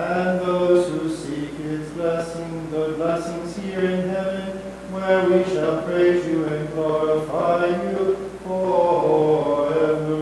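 Unaccompanied male voice chanting a Maronite liturgical melody in long held notes, phrase after phrase.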